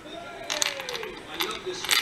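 Small brass key pins being tipped out of a lock plug onto a wooden pinning tray: a few sharp, light metallic clicks.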